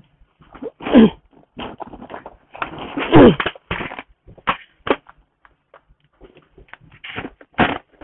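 Two loud, short cries that fall in pitch, one about a second in and another about three seconds in, among rustling and knocks of things being handled.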